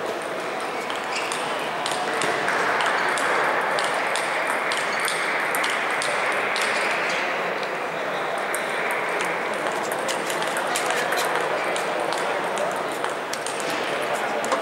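Table tennis balls clicking on tables and bats, many short sharp ticks at an uneven pace, from rallies at the surrounding tables, over a din of many voices in a large sports hall that swells for several seconds in the middle.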